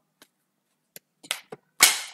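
Tarot cards being shuffled: a few light clicks, then one sharp snap near the end as a card flies out of the deck.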